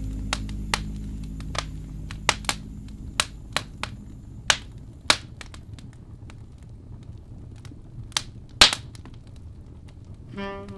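Wood fire crackling in a fireplace: irregular sharp pops and snaps over a low rumble, the loudest pop near the end. The last notes of a jazz track fade out in the first second or two.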